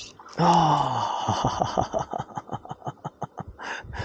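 A man's exclamation "oh", falling in pitch, then a run of breathy laughter in short pulses, about five or six a second, fading toward the end.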